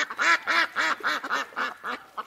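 Duck quacking: a quick run of about eight short quacks, some four a second, each rising and falling in pitch.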